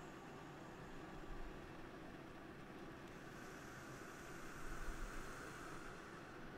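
Faint, steady hiss of room tone, growing a little brighter about halfway through.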